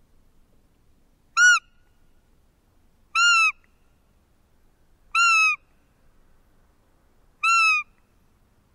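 A roe deer lure call (fiep) blown four times, about two seconds apart. Each is a short arched piping squeak, rising and falling in pitch; the first is brief and the next three a little longer. It imitates a roe doe to draw in a buck during the rut.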